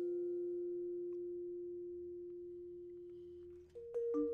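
Vibraphone chord of two notes ringing out with the sustain pedal down, fading slowly and evenly. Near the end the lower note is damped and a new note is struck, just as a quick run of mallet strokes begins.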